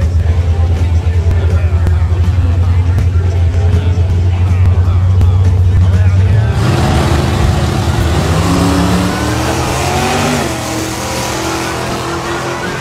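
Two pickup trucks' engines rumbling deeply on a drag strip's start line, then launching about six and a half seconds in. The engine notes climb and drop back around ten seconds in at a gear shift. One truck is a Ford Lightning leaving off a transbrake in its 4R100 automatic.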